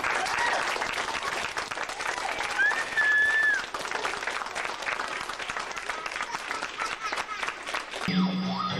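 Audience applauding after a dance number, with one high, drawn-out call from the crowd about two and a half seconds in.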